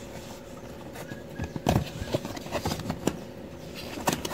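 A perfume box being opened by hand: a scattering of light taps, clicks and rustles of the packaging, over a faint steady hum.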